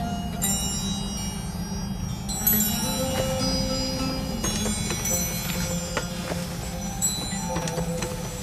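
Background score music: chime-like struck notes, a new cluster about every two seconds, ringing over a low steady drone.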